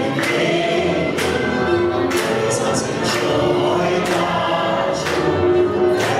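A man singing a Hungarian magyar nóta, accompanied by a Gypsy band of violin, cimbalom, double bass and clarinet.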